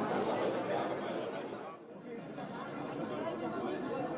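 Many voices of a crowd murmuring indistinctly, with a brief drop in level about halfway through.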